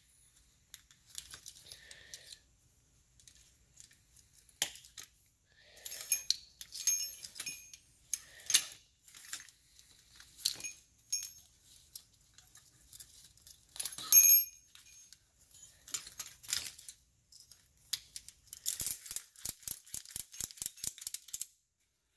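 Ratchet strap hardware and steel strut parts clinking and clicking as they are handled, with one sharp metallic clink about two-thirds of the way through standing out as the loudest. Near the end a quick run of clicks comes as a strap's ratchet buckle is cranked to compress the coil spring.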